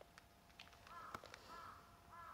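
A crow cawing faintly, repeated calls about half a second apart starting about a second in, with a few light clicks around them.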